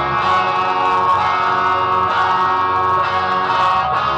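Electric guitar playing a solo line of long, sustained notes, each held for about a second before moving to the next.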